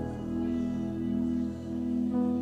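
Slow, soft live band music: keyboard and electric guitars holding one sustained chord, with no singing.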